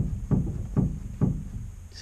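Steinway grand piano's una corda (soft) pedal being worked, the keyboard and action shifting sideways with four dull knocks about half a second apart.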